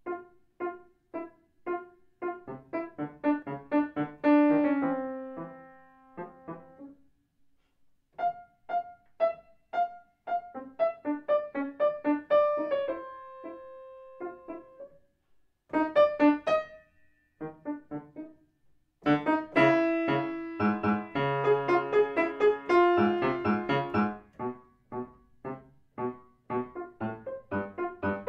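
Solo grand piano playing short, detached phrases of struck notes separated by brief pauses, ending in a denser, fuller passage in the second half.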